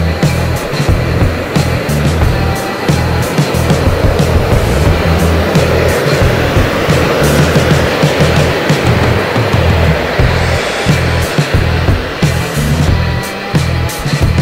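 Background music with a steady beat, over which the simulated airframe noise of an airliner flying over with its landing gear down rises as a broad rushing noise, is loudest about halfway through, and fades away.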